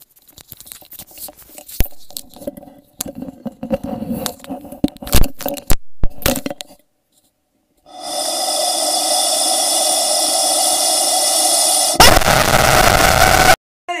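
Yellow rubber chicken toy. For about the first seven seconds a cord is pulled out through its beak with scraping, squeaky rubbing and small clicks. Then the squeezed chicken gives one long, steady squawk of about four seconds, followed by a louder, harsher squawk that cuts off abruptly.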